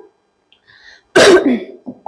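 A woman coughs once, sharply, about halfway in.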